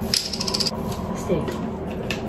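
A short, bright jingling sound effect, a quick run of high ticks lasting about half a second, near the start.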